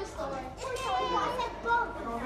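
Several voices talking at once, indistinct chatter carrying in a large indoor tennis hall.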